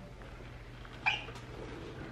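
Steady low background hum with one short, high-pitched squeak about a second in.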